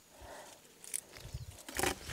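Quiet rustling and a few soft low thumps from movement close to the microphone, with one louder brushing rustle near the end.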